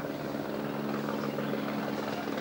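Steady engine drone at a constant pitch over a noisy background.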